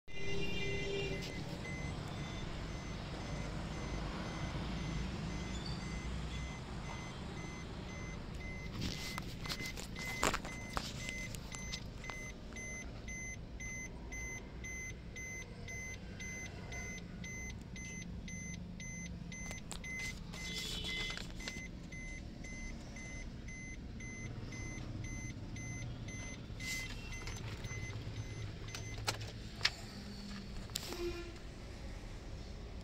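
Maruti Suzuki Ertiga's 1.3-litre four-cylinder diesel engine idling steadily, heard from inside the cabin. A few sharp clicks sound around ten seconds in and again near the end.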